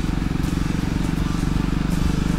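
Motorcycle engine running at a steady pace under way, a low even drone with no revving.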